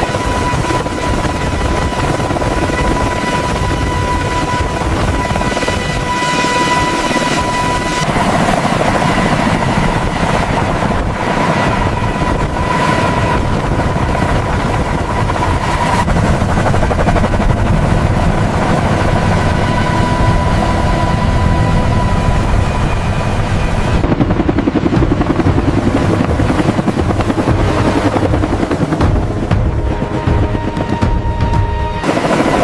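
A heavy-lift helicopter's rotor and turbine engines running with a steady high whine over dense rotor rumble. The mix changes every eight seconds or so and is slightly louder in the last few seconds.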